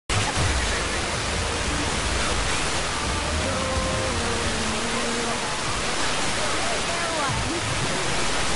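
Weak, distant FM broadcast station on 92.1 MHz, received by sporadic-E skip through an RTL-SDR in wideband FM mode: steady loud hiss with the station's voice audio faint and fading underneath.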